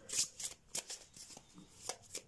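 A deck of oracle message cards being shuffled by hand: a run of short, irregular card clicks and flicks.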